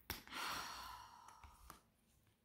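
A woman's sigh: one breathy out-breath lasting about a second and fading away, followed by a faint click near the end.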